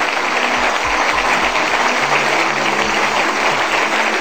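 Audience applauding steadily, with music playing underneath.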